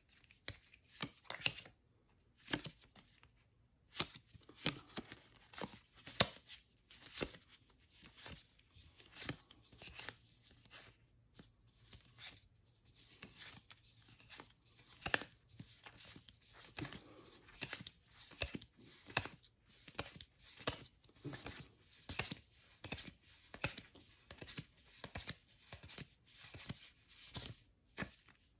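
Stiff cardstock game cards of the Unmatched Deadpool deck being slid and flicked one at a time through the hands, giving a string of short, irregular clicks and snaps, roughly one or two a second.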